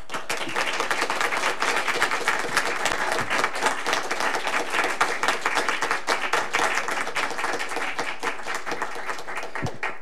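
A roomful of people applauding: many hands clapping in a dense, steady patter that starts abruptly and eases off just before the end.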